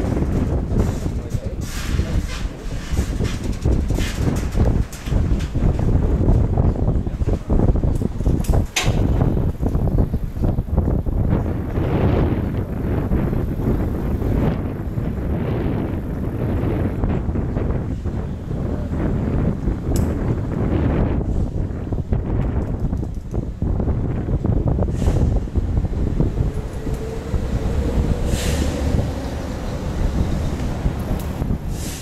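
Wind buffeting the microphone: a loud, gusty low rumble, broken by a few sharp clicks.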